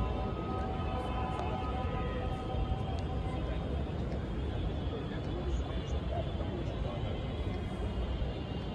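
Outdoor crowd ambience: indistinct distant voices over a steady low rumble. A faint held melody fades out about three seconds in.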